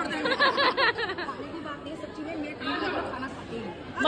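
Speech only: women's voices chatting, with background crowd chatter.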